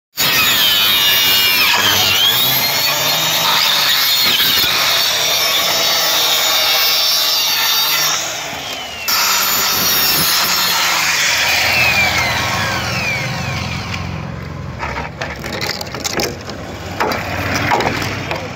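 Small handheld electric circular cutter sawing through a green bamboo pole, the motor whining and the blade rasping through the wood, easing off briefly about eight seconds in before cutting again. About two thirds of the way through the motor winds down with a falling whine, followed by a few quieter irregular knocks.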